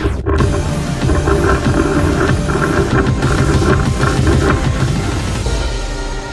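Background music, loud and dense, fading out near the end.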